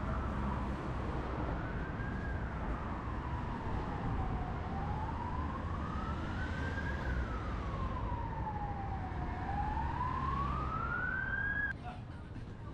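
Emergency vehicle siren wailing, its pitch sweeping slowly up and down about every five seconds, over the steady rumble of road traffic. It stops abruptly near the end.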